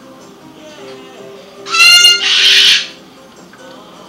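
A blue-and-gold macaw gives one loud call about two seconds in, lasting about a second: it starts clear-toned and turns into a raspy screech. Soft background music plays throughout.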